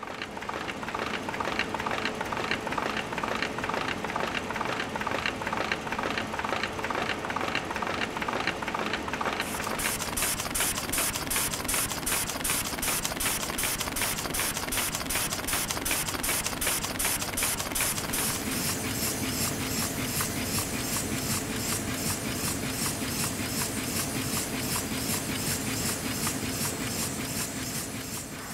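Printing press running: a steady mechanical clatter with a fast, even beat, turning brighter and hissier about ten seconds in.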